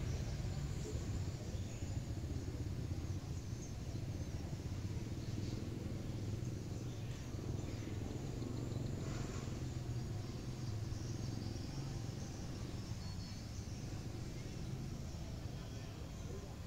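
Steady low rumble of distant road traffic, with a few faint passing sounds about five, seven and nine seconds in.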